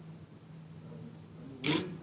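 A single short camera shutter click about one and a half seconds in, over a quiet room with a steady low electrical hum.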